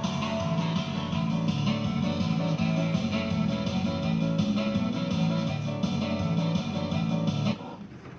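Guitar-led music from a fruit machine during a play, in a steady repeating pattern that cuts off abruptly near the end.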